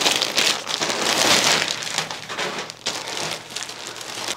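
Plastic packaging crinkling and rustling: an orange poly mailer and the plastic wrap of a car seat cushion being handled as the cushion is pulled out. It is a continuous dense crackle, loudest about a second in, easing toward the end.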